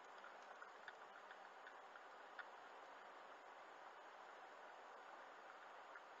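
Near silence inside a moving car: a faint steady hiss with a few soft, irregularly spaced ticks in the first couple of seconds.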